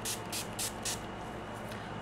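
Pump-mist bottle of NYX makeup setting spray spritzed in quick pumps, about three a second: four short hisses in the first second, then it stops.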